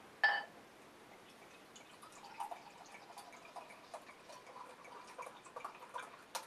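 Beer being poured from a bottle into a glass chalice: a brief clink near the start, then faint gurgling and splashing as the beer fills the glass.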